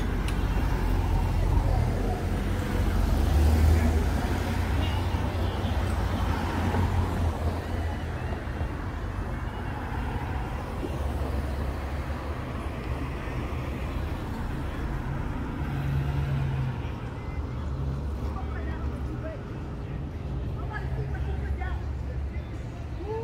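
Road traffic on a town street: cars passing with a steady low rumble, louder about three to four seconds in.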